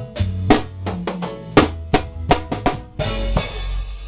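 Drum kit playing a quick run of snare and drum hits over bass guitar and keys in a live reggae band, ending on a ringing cymbal crash with a held bass note about three seconds in as the song finishes.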